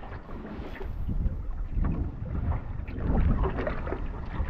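Wind rumbling on the microphone over choppy sea, with water lapping against a small aluminium dinghy's hull.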